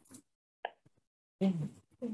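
Brief, indistinct snatches of voices from a meeting room, heard through a video-call microphone and cut off into dead silence between them. There is a short blip about half a second in and a louder burst of voice near the end.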